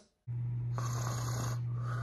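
A man snoring while asleep: a long, rasping snore in, followed by a breathier, higher-pitched breath out, over a steady low hum.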